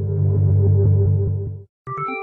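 Electronic logo jingle: a low synthesizer drone swells and cuts off abruptly, then near the end a bright chime strikes and rings on.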